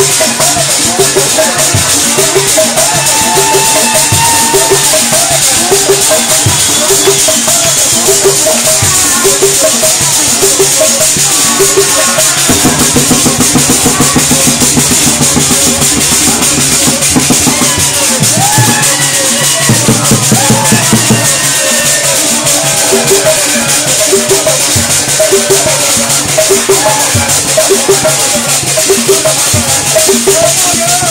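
Loud baikoko dance music: steady drumming with rattling shakers and voices over it, with a denser stretch of low drumming in the middle.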